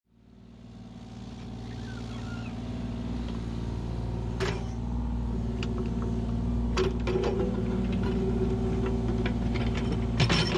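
Kubota U35-4 mini excavator's diesel engine running steadily, fading in at the start. A few sharp knocks come as the bucket works the rocky soil.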